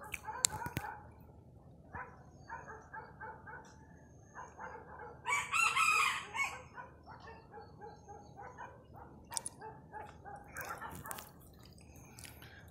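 A rooster crowing once, about five seconds in, the loudest sound here. Shorter, softer repeated calls come before and after it, with a few sharp clicks.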